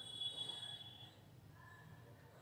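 Chalk squeaking on a blackboard while a circle is shaded in: a thin, high squeak about a second long, then fainter, lower squeaks near the end.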